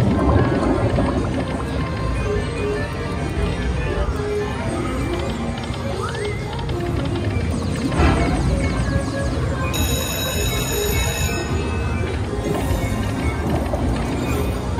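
Whales of Cash slot machine playing its game music and reel-spin sound effects over the din of a casino floor, with a high steady chiming tone for about a second and a half, some ten seconds in.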